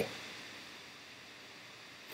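A pause between speech: faint steady hiss of room tone and recording noise.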